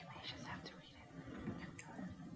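Faint whispered talk between people, with a soft click near the end.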